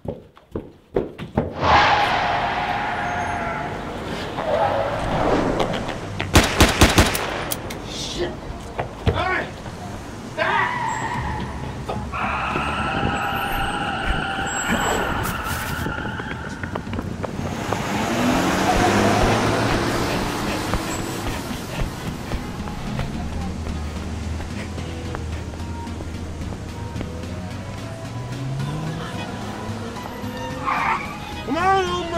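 Action-film soundtrack of background music mixed with sound effects, including a quick cluster of sharp impacts about six to seven seconds in.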